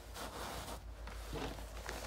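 Faint rustling and handling noise of newspaper being pushed into a tablecloth sit-upon cushion as stuffing, with a few soft short crinkles.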